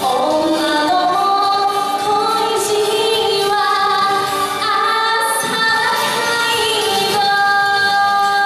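A woman singing live into a microphone over musical accompaniment through a PA, ending on a long held note about seven seconds in.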